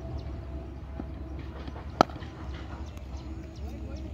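A cricket bat striking the ball: one sharp crack about halfway through, the loudest sound by far, over a steady outdoor background.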